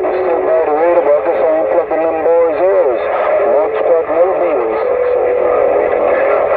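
Uniden Grant XL CB radio receiving a long-distance skip station on channel 6 (27.025 MHz): a voice through steady static, thin and hard to make out, with a steady whistle tone underneath at times.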